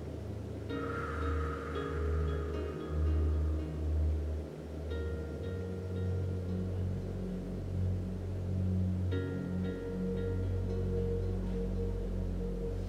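Slow ambient meditation music: a low sustained drone, with higher held tones coming in about a second in, around five seconds, and again around nine seconds.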